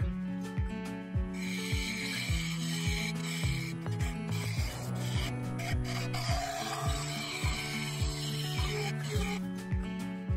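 Bowl gouge cutting a spinning wooden bowl on a lathe: a rasping scrape of steel on wood, strongest from about a second in to about four seconds in. Background music with a steady beat runs under it.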